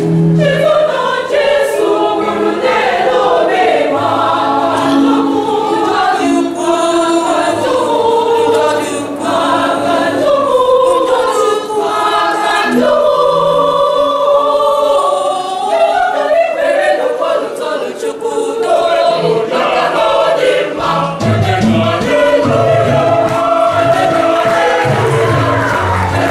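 Mixed church choir singing an Easter hymn in Igbo in several parts, the voices running on without a break.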